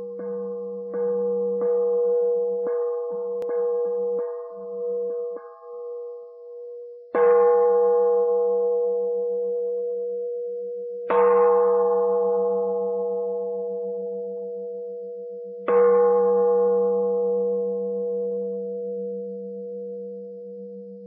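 A bell with a single steady ringing pitch, struck lightly about eight times in quick succession over the first five seconds. It is then struck hard three times, a few seconds apart, each strike ringing on and fading slowly.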